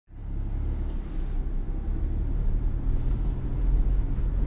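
Steady low rumble of a car on the move, the road and drivetrain noise of a Subaru Forester e-BOXER hybrid with its 2.0-litre boxer petrol engine, coming up quickly right at the start.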